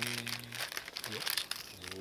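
Paper wrapper of a convenience-store chicken steak crinkling as it is handled, with many small crackles. A drawn-out word trails off in the first half-second, and there are a couple of brief vocal sounds.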